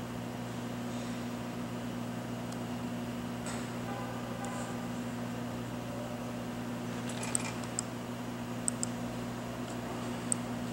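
Steady low electrical hum with a fan-like hiss from the energised vibration-shaker system, its servo just switched on and driving the shaker at about 5 Hz. A few light, sharp clicks come in the last three seconds.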